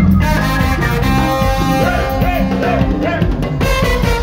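A live brass band with trombone plays dance music loudly. Several rising-and-falling melodic slides come in the second half.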